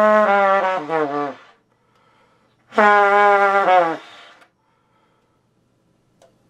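Trumpet playing a low held note that breaks into a quick run of falling notes, ending about a second and a half in. After a short pause a second held note starts and slides down near the four-second mark before fading.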